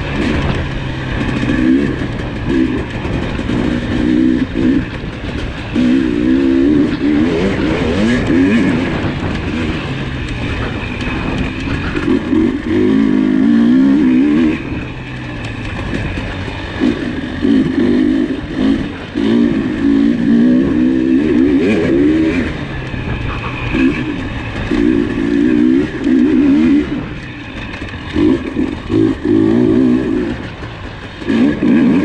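KTM 300 XC two-stroke single-cylinder dirt bike engine at race pace, heard from on the bike, the throttle opened hard and chopped again and again so the engine surges and drops every couple of seconds.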